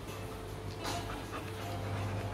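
Faint breathing and small noises from a Rottweiler close to the microphone, over a steady low hum, with a couple of short, soft sounds about a second in.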